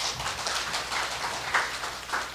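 Applause: a small group of people clapping their hands, a dense steady patter of claps.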